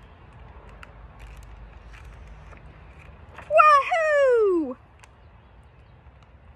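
A woman's voice calls out a long playful 'wahooo' about three and a half seconds in, the pitch stepping up and then sliding down over about a second; the rest is a faint, even background.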